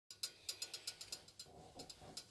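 A quick run of sharp, ratchet-like clicks, about eight a second at first, then thinning out to a few scattered clicks.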